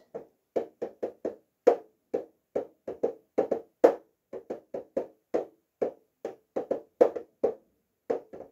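Fingers tapping on a boxed set of felt markers: a run of short, light taps, three to four a second at an uneven pace.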